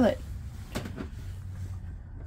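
Plastic RV toilet lid and seat being lifted open: two light clacks in quick succession a little under a second in, over a steady low hum.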